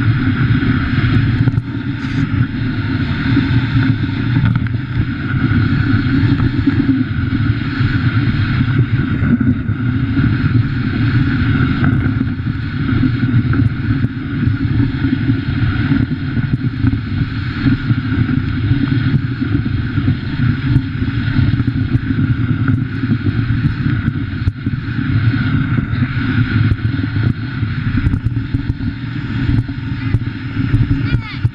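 Dog sled runners sliding over a packed snow trail, a steady loud rumble and hiss carried up through the sled frame, with some wind on the microphone.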